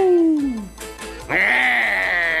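Cartoon dogs howling: one long howl falling in pitch dies away near the start, and a second drawn-out howl begins just over a second in.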